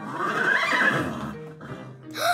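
A horse's whinny, used as the cartoon unicorns' call: one noisy, shaky call that fades out within about a second.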